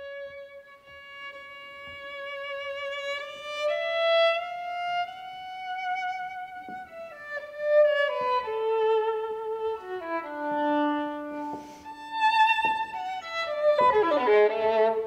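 Solo violin playing a slow, unaccompanied melody with vibrato. It opens on a long held note, climbs, then falls to a low sustained note, and quicker notes follow near the end.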